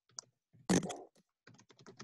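Typing on a computer keyboard: one louder knock a little under a second in, then a quick run of keystrokes.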